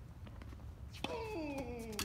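A sharp tennis-ball hit about a second in, followed by a drawn-out cry from a player that falls in pitch for about a second.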